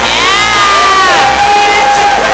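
Audience cheering with long whoops over the song: one voice rises and falls, then a second, lower voice holds a long call.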